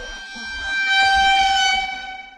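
A train whistle sounding one long steady note that swells in and is loudest in the second half, over a low rumble.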